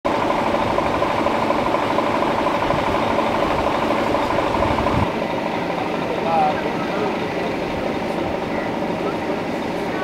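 Vehicle engine idling with a steady hum, which drops away abruptly about halfway through, leaving a quieter street background.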